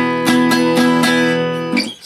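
Acoustic guitar strummed down and up, about four quick strokes over a ringing chord fretted as the open low E string with the second fret barred on the A and D strings. The chord is cut off near the end.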